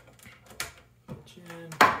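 Patch cables being plugged into the jacks of a Moog Grandmother synthesizer's patch panel: a few short plastic-and-metal clicks and handling knocks, the loudest near the end.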